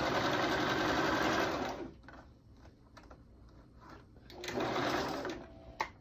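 Electric domestic sewing machine stitching in two short runs: one of about two seconds at the start, and a second shorter run about four and a half seconds in. It is sewing a pinned waistband seam onto a pair of pants.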